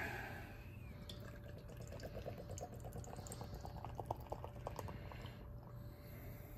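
Canned Schöfferhofer Grapefruit hefeweizen poured into a glass: faint liquid pouring with a run of short glugs in the middle as the foam head builds.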